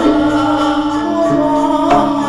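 Live Javanese gamelan music: bronze gong-chimes and metallophones ring in long held notes, with singing over them. A sharp struck accent comes near the end.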